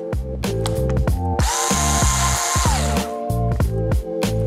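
Small electric screwdriver driving a laptop LCD panel screw: the motor whines steadily for about a second and a half, then the whine drops in pitch as it winds down and stops. Background music with a steady beat plays throughout.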